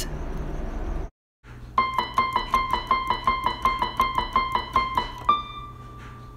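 Keyboard music: a single high note repeated about four times a second, then held near the end. It is preceded by about a second of car road noise that breaks off in a short gap.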